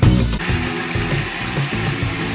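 Water from a bathroom tap running steadily into a sink as a makeup sponge is rinsed under it, coming in about half a second in, over background music.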